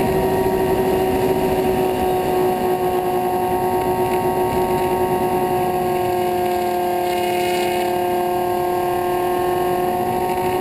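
Twin electric motors and propellers of a Skywalker FPV plane running steadily, heard from its onboard camera: a steady multi-tone whine over rushing wind noise.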